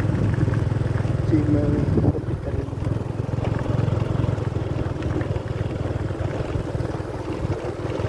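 Wind buffeting the camera microphone: a steady, gusty low rumble, with a brief snatch of voice about a second and a half in.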